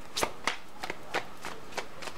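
A deck of tarot cards being shuffled by hand: about five or six separate sharp card snaps spread over two seconds.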